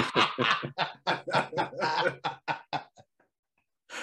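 Men laughing hard, a rapid run of short 'ha-ha' pulses that slow and fade out about three seconds in.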